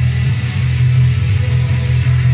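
Electric bass played with the fingers in a steady, driving rock bass line, its low notes the loudest part of the sound, over a full rock band track.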